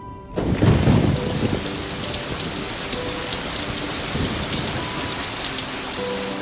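Heavy rain falling steadily, opening with a low rumble of thunder about half a second in.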